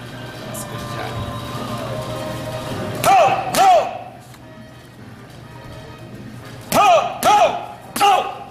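Boxing gloves smacking focus mitts in two quick one-two combinations, about three seconds in and again near the end, each pair of sharp smacks about half a second apart and each punch met by a short vocal call.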